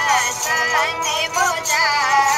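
A woman singing a Rajasthani folk song with a high, ornamented melody whose pitch wavers and glides from note to note.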